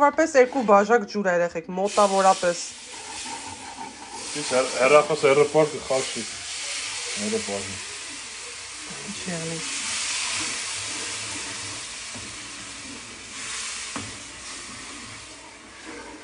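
Sugar water poured into a pan of hot, butter-toasted semolina and walnuts, sizzling and hissing as it hits, with a wooden spoon stirring through it. The sizzle builds to its loudest a little past the middle and then eases as the mixture turns to a thin porridge.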